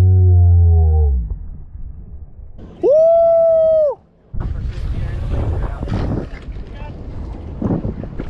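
A loud low held tone for about the first second, then a higher held tone about three seconds in that lasts about a second and cuts off sharply. After that, wind buffets the microphone over water noise on an open boat.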